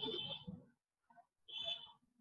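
Two short high-pitched beeps about a second and a half apart, each with a rougher, noisier undertone.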